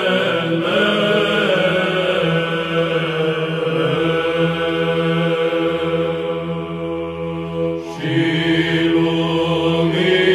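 Byzantine chant: a kalophonic heirmos in the third tone sung by a male psaltic choir, a long melismatic line on drawn-out vowels over a held low drone (ison). The voices thin out briefly about eight seconds in, then come back in.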